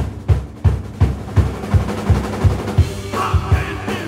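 Live rock band crashing in all at once after a quiet held chord. The drum kit drives a steady beat, about three kick-and-snare hits a second, under the full band.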